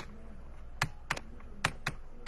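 Computer keyboard keys being pressed: about five sharp, irregular clicks in two seconds.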